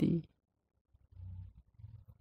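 The end of a man's spoken word, then a pause with only a faint low murmur about a second in.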